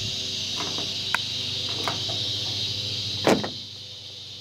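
Handling of a microwave oven's power cord: a few light clicks and one sharper snap about three seconds in, over a steady high drone of insects.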